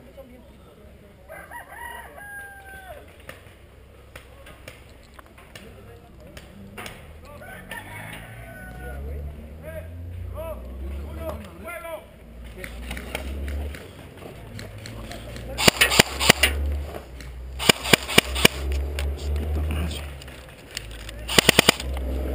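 A rooster crowing faintly, with falling pitch, a couple of seconds in, and more short calls later. Then come the loudest sounds: quick bursts of sharp cracks around the middle and a run of four near the end, typical of airsoft guns firing during the match.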